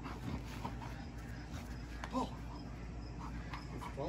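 A German Shepherd–Rottweiler mix dog making soft sounds as she tugs on a toy in a game of tug-of-war.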